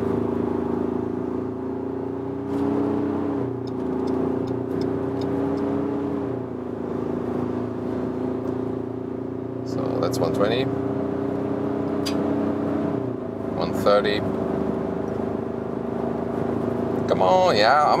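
Ford Ranger Raptor's 2.0-litre bi-turbo diesel engine pulling hard under motorway acceleration from about 70 km/h, heard from inside the cabin. It gives a steady drone whose pitch drops slightly at each upshift of the automatic gearbox, about three, six and thirteen seconds in.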